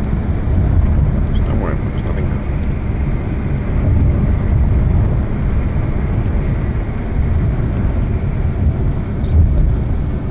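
Steady low rumble of road and wind noise inside a moving car.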